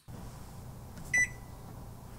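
A microwave oven's keypad beeps once as a button is pressed: one short, high beep about a second in, over a low steady hum.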